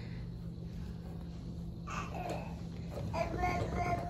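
A baby babbling: a short vocal sound about two seconds in and a longer, held one near the end, over a steady low hum.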